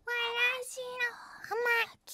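A high-pitched woman's voice calling out in a sing-song tone: one long phrase, then a short one near the end.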